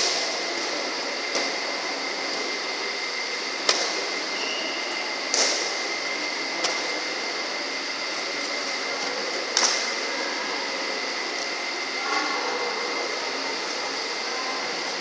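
Badminton rackets striking a shuttlecock during a rally: about six sharp snaps one to three seconds apart, the last a couple of seconds before the end. Under them runs the steady whir of the hall's pedestal fans with a faint high whine.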